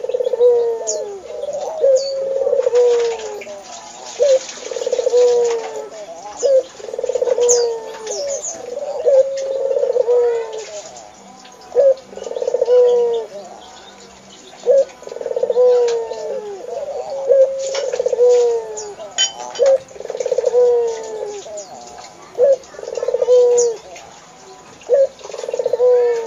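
Barbary dove (burung puter) cooing over and over, one rolling coo about every second, each ending on a falling note. Small birds chirp faintly and higher up in the background.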